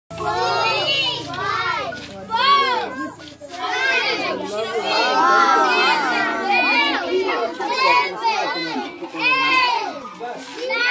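A group of children's voices, high-pitched, talking and calling out over one another in words the recogniser could not make out.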